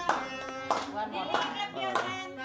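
Several people clapping in a steady rhythm, about one clap every 0.6 seconds, over voices.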